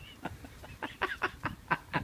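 A man chuckling softly: a quick run of short breathy laughs about a second in.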